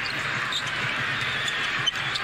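A basketball being dribbled on an arena court over a steady roar of crowd noise, with a sharp click near the end.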